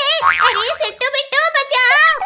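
High-pitched, sped-up cartoon character voice. A short sound effect lies under it from about a quarter of a second to just before one second in.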